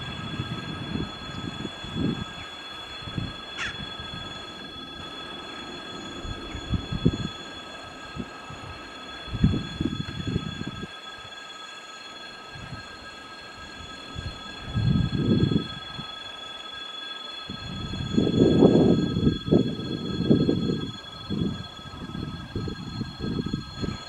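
A set of coupled VL10U and VL11 electric locomotives running light past: low, uneven rumble of wheels on rails that swells to its loudest about three quarters of the way through, then eases.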